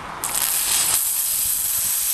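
Aerosol can of silly string spraying: a steady hiss that starts a moment in and keeps going.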